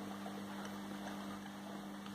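A faint, steady low hum with two held tones and no change in pitch or level.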